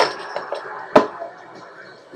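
Metal bottle caps clinking in a cigar box as one is drawn out by hand, with one sharp click about a second in.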